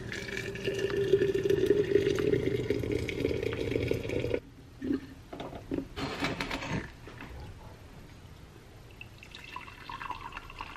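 Hot water poured from a glass kettle into a glass teapot with a mesh infuser: a steady pouring stream, rising slightly in pitch as the pot fills, that stops abruptly about four and a half seconds in. A few short knocks and clinks follow as the teapot is handled. Near the end, tea starts pouring from the teapot into a ceramic mug.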